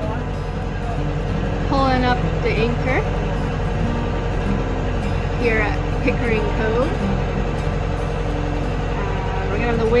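A sailboat's inboard engine running steadily, a low even drone, as the boat motors out. Indistinct voices come in a few times over it.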